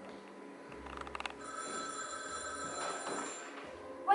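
Telephone bell ringing: a quick rattling trill about a second in, then a ring held for about two seconds, heard across a theatre stage.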